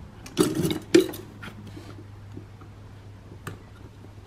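Fire extinguisher being pressed into its metal mounting bracket: clinks and rattles in the first second, ending in a sharp click at about one second, then a single lighter click near the end.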